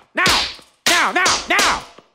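A rubber hose lashing bare skin, heard as sharp whip-crack smacks about two-thirds of a second apart. Each crack is followed by a yelled cry.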